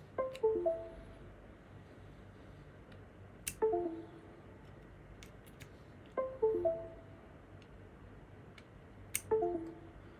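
Windows USB device notification chime, a short falling run of three notes, sounding four times about every three seconds as a faulty USB flash drive is plugged in and pulled out, with faint clicks of the plug. The computer chimes but no drive appears, which the repairer puts down to a firmware fault.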